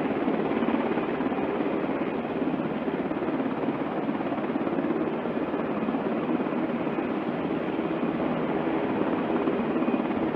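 Several AH-64 Apache helicopters running, a steady, dense rotor and turbine noise with a fast rotor flutter.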